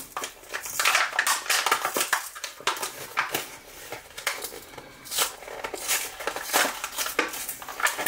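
Toy packaging being torn open by hand: a quick, irregular series of rips and crackles.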